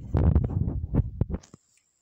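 Handling noise from fingers brushing and knocking against the recording device right at its microphone: a burst of low, muffled rumbling thumps lasting about a second and a half, then cutting off abruptly.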